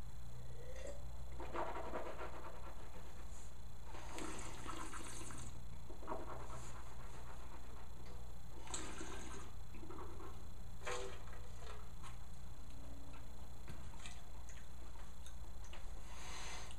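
A person sipping and tasting white wine: a few faint slurps and breaths spaced a second or two apart, over a steady low hum.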